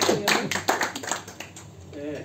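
A small group applauding, with quick, uneven hand claps that thin out and die away about a second and a half in.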